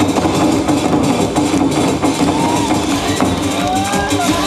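Large painted barrel drums beaten with sticks in a fast, steady rhythm over loud accompanying music.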